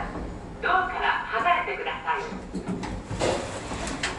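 A voice speaking briefly, then the elevator's sliding doors opening about three seconds in, with a short rush of noise and a click or two as they part.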